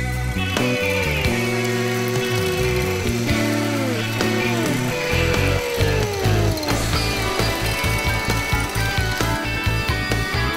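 Electric hand mixer whisking egg whites in a ceramic bowl, its motor whine falling in pitch several times as fine salt is added a little at a time to build a salt meringue; background music plays underneath.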